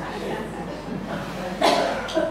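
A single short cough about three-quarters of the way through, over faint room murmur.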